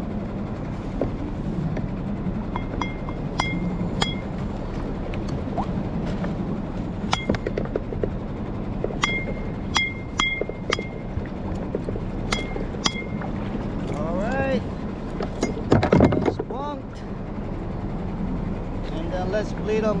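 Small boat motor running steadily with a low hum, under scattered sharp, ringing clinks and knocks that come in small groups through the first two thirds. There are brief voice sounds near the end.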